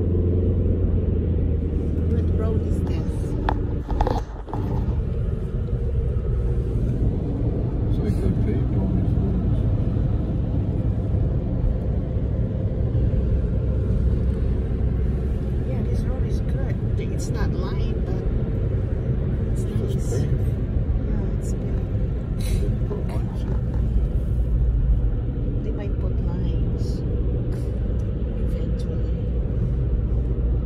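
Steady low rumble of road and engine noise inside a moving car, with a brief dip and a few clicks about four seconds in. After that the low hum settles slightly lower in pitch.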